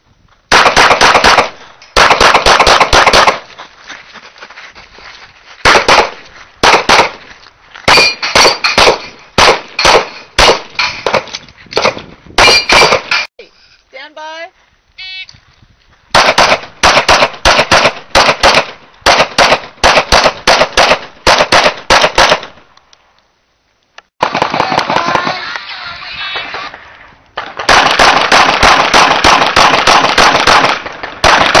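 Strings of rapid handgun shots fired in quick succession, several a second, broken by short pauses between strings. Some shots in the middle strings are followed by the ringing of steel plate targets being hit.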